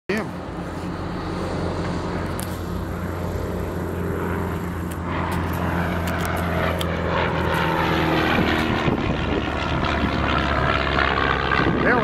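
Light propeller airplane's engine at takeoff power as it climbs out past the runway; the engine note drops in pitch as the plane passes, about seven to nine seconds in, then grows more distant.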